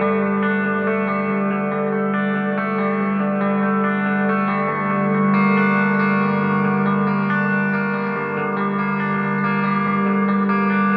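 Atmospheric black metal instrumental passage: electric guitar with echo and reverb playing over a steady low drone. No drums or vocals.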